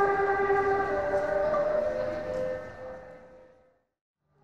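Busker's bowed string instrument playing slow, held notes that fade out to silence near the end.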